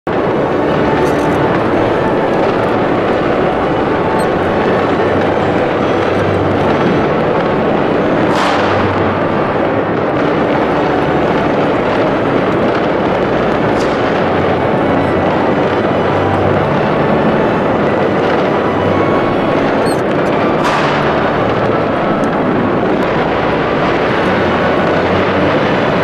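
Dense, steady din of many New Year's Eve fireworks going off across a city at once, with three short downward-sweeping whistles from individual rockets.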